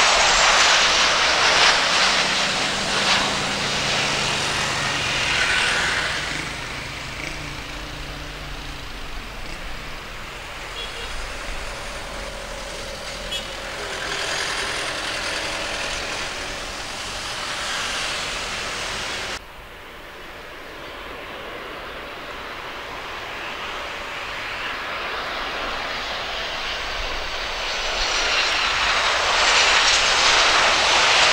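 Boeing 737 jet engines (CFM56) loud as the airliner passes close on its landing, then fading as it rolls away down the runway, with a brief swell partway. After an abrupt cut, a second Boeing 737's engines grow steadily louder as it comes in to land.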